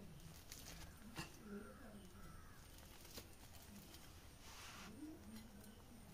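Near silence: faint room tone with a couple of soft clicks and faint indistinct background sounds.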